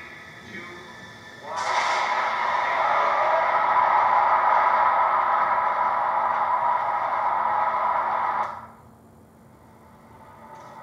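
Film soundtrack played through a TV's speakers: a loud, dense rushing effect lasting about seven seconds, which cuts off suddenly as playback skips ahead.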